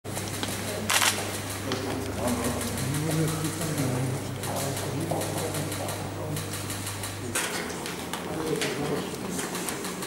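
Several people talking indistinctly as they greet each other and shake hands, with frequent sharp clicks on top and a low hum that cuts off about seven seconds in.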